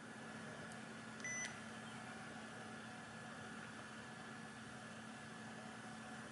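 An Olympus digital voice recorder gives one short electronic beep about a second in as it is switched into PC (USB storage) mode. A faint steady hum runs underneath.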